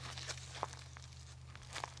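Cow eating from a metal feed trough: faint crunching and a few soft clicks, over a low steady hum.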